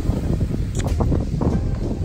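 Wind buffeting a phone's microphone outdoors: a loud, uneven low rumble, with a few faint clicks.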